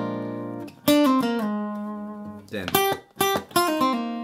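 Steel-string acoustic guitar playing a short picked lick. A chord rings and fades, a new note is picked about a second in and steps quickly through a few pitches, and then several sharp picked notes come in a burst near three seconds.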